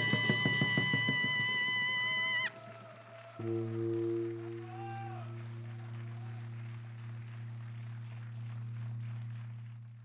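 Taepyeongso shawm holding a long final note over the last drum strokes, bending slightly down and cutting off about two and a half seconds in. About a second later a jing gong is struck once and rings low, fading slowly, under faint scattered applause.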